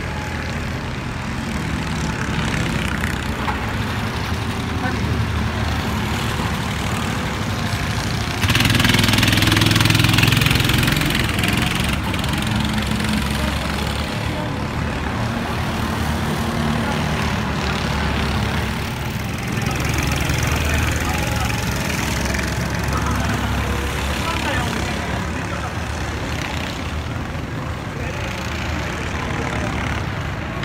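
Several rental go-karts lapping the track, their small engines droning and changing pitch as they brake and accelerate. One kart passes louder and close about eight to eleven seconds in.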